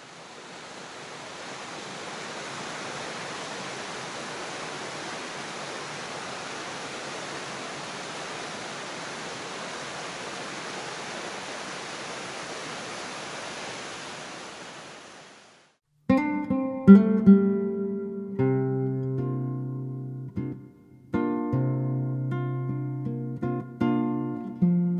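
Rushing water of a tall waterfall, a steady noise that fades in and then fades out about fifteen seconds in. About sixteen seconds in, an acoustic guitar starts playing, louder than the water.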